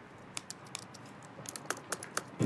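Typing on a MacBook laptop keyboard: irregular key clicks, a few at first, then coming quicker in the second half.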